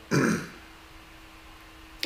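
A man clears his throat once, briefly, followed by quiet room tone with a faint steady hum.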